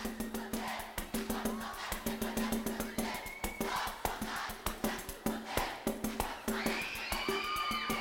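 Live band music in an instrumental break: tambourine and other percussion keep a fast, even beat over a steady held low note. Near the end voices come in with a long sung note.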